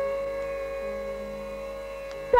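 Carnatic music in raga Suddha Saveri: one long note held steady and slowly fading, over a faint low drone.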